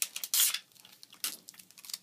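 Off-camera rustling and scraping handling noises: one loud rustle about half a second in, then a few shorter scuffs.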